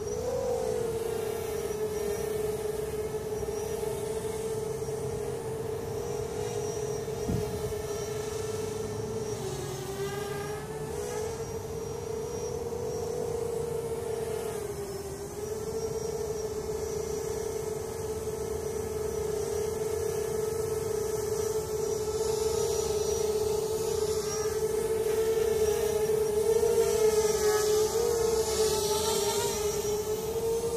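Hovership MHQ quadcopter's electric motors and propellers humming in flight, a steady pitch that wavers up and down slightly as the throttle shifts, growing somewhat louder near the end.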